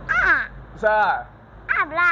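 A high-pitched voice giving four short, wordless exclamations, each sliding in pitch, with brief pauses between them.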